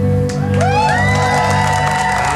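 Live pop band music: a sustained low chord from bass guitar and keyboard, with one long held voice note that glides up about half a second in.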